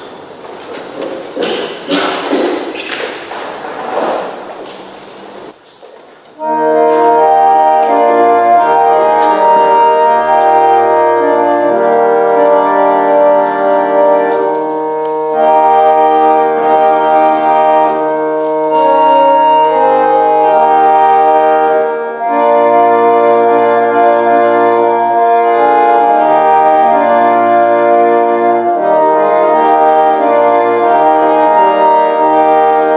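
Organ playing slow, sustained chords in the manner of a hymn interlude, starting about six seconds in after a short stretch of fading indistinct noise.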